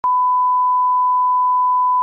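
Television test-card line-up tone: a single steady pure beep at about 1 kHz, starting abruptly and held unchanged. It is the reference signal that goes with colour bars.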